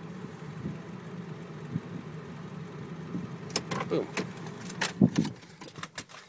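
A Ford 7.3-litre Power Stroke turbo-diesel V8 idling steadily, heard from inside the cab. In the second half there are several sharp clicks and knocks.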